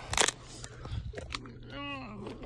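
Scattered scraping and crunching of dirt and debris as a person moves about in a crawl space, with a short vocal grunt near the end.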